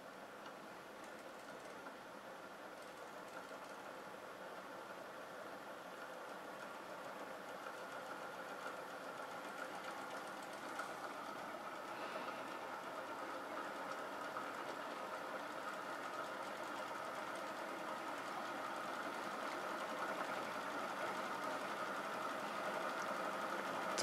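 A 1.5 kg rotor disc spinning up, making a steady mechanical whir that grows gradually louder as it speeds toward about 900 RPM.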